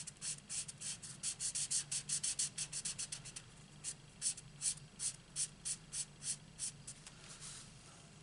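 Stampin' Blends alcohol marker nib scratching on cardstock in short back-and-forth colouring strokes, quick at about five a second for the first three seconds or so, then slower and more spaced, stopping about a second before the end.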